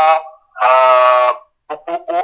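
A single steady held musical note, rich in overtones, lasting just under a second and cutting off cleanly, between short voice passages.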